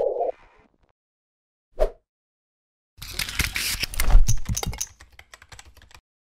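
Produced logo-sting sound effect: a short blip, a pause of dead silence, then about two seconds of rapid clicking and rattling like fast typing. It thins to scattered ticks near the end.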